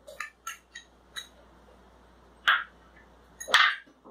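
A metal spoon clinking and scraping against glass bowls as chopped coriander is scraped into the batter. There are a few light clicks in the first second or so, then two short scrapes, the second louder, near the end.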